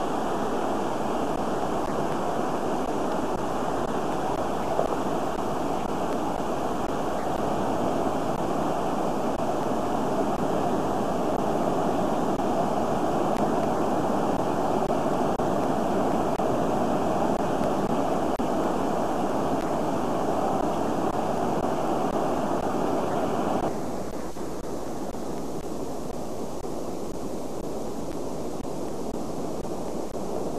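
Sea surf breaking on a rocky shore: a steady wash of noise. About 24 seconds in it cuts off abruptly to a quieter, duller steady rush.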